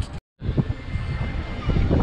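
A steady low outdoor rumble, broken just after the start by a split-second dropout to total silence at an edit cut, then carrying on.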